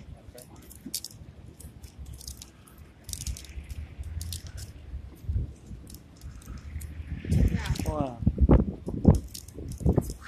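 Green palm frond leaves crackling and rustling in quick small clicks as they are twisted by hand, the folds of a woven palm-leaf flower being pulled into shape.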